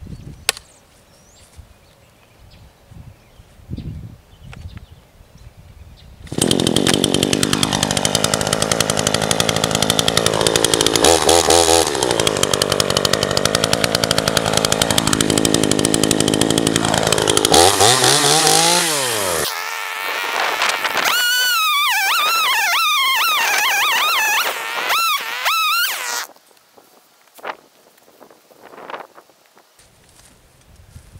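Gas chainsaw starts about six seconds in and runs loudly, revving up and down for some thirteen seconds. Its engine then drops in pitch and dies out. A loud, high, wavering whine follows for about six seconds and then stops.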